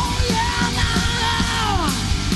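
Sleaze rock band playing an instrumental break: a distorted lead guitar holds and bends high notes, sliding down in pitch near the end, over bass and drums.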